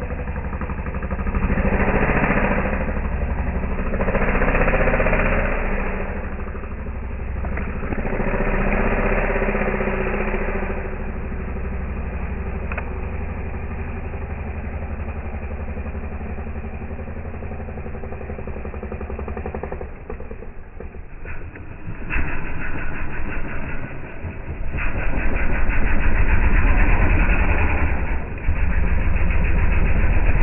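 Off-road dirt bike engines revving in repeated surges on a steep, muddy hill climb. The engine runs steadier in the middle, drops away briefly about two-thirds of the way in, then revs hard again near the end.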